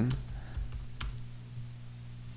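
A few keystrokes on a computer keyboard as a terminal command is typed, two sharp clicks close together about a second in, over a steady low hum.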